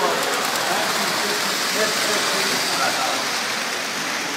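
Indistinct background voices over a steady, even hiss-like noise.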